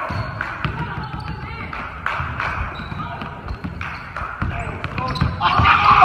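Basketball dribbled repeatedly on a hardwood gym floor, with voices in the background.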